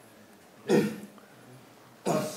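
A man's short, forceful grunted exhale, pushed out with the effort of a dumbbell rep, about two-thirds of a second in; the next one begins right at the end.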